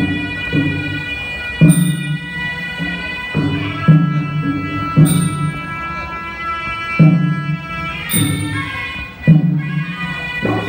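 Traditional Kun Khmer boxing music (pleng pradal) for the boxers' pre-fight ritual. A sralai reed pipe holds a long, ornamented melody over hand-drum beats, with a cymbal clash about every three seconds.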